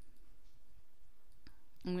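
A single computer mouse click about one and a half seconds in, over faint steady room hiss.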